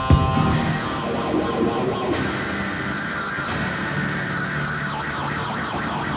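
Guitar music with a dense, layered texture, a brighter shimmering layer coming in about two seconds in.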